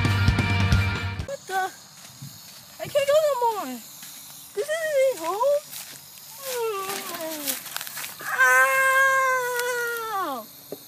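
Rock music cuts off about a second in. Then a cat meows about five times: drawn-out calls that fall in pitch, the last held for about two seconds before dropping.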